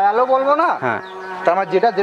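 Cattle mooing: one drawn-out call that rises and then falls in pitch in the first second, followed by shorter calls.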